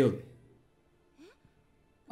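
A voice finishing a word, breathy at its tail, then near silence: room tone with a faint, brief rising sound a little past one second in.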